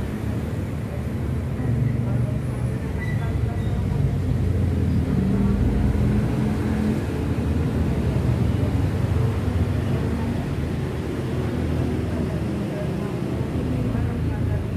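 A muffled voice reciting a prayer over a steady low rumble.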